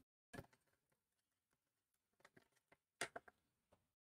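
Near silence, broken by two faint short clicks, one about half a second in and one at about three seconds.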